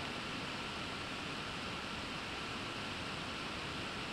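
Steady background hiss of room and microphone noise, with a faint steady high tone running through it.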